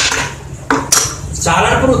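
A few sharp metallic clinks, two close together about a second in, as small copper rings are handled and fitted at a foot.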